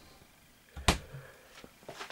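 A single sharp knock about a second in, followed by a few faint small clicks, against a quiet room.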